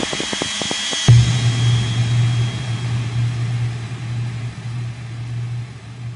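Synthesized electronic sweep effect, spacey and filtered. A hissy wash with a rapid run of clicks gives way, about a second in, to a sudden deep steady drone. The drone slowly fades as the hiss thins out.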